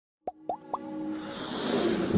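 Intro sound effect: three quick rising bloops about a quarter second apart, then a swelling whoosh with sustained musical tones that builds steadily louder.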